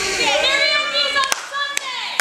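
Several raised voices calling out at once, with sharp hand claps about two or three a second starting past the middle.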